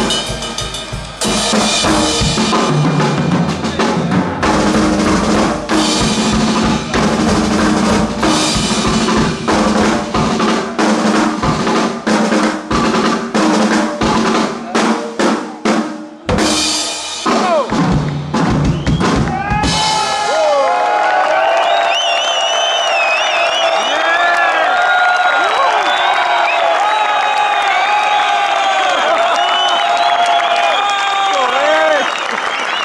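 Two rock drum kits played together in a drum duet: fast rolls, bass-drum and tom strokes and cymbal crashes, with a brief stop about 16 seconds in and a last flurry of hits that ends about two-thirds of the way through. The audience then cheers and applauds.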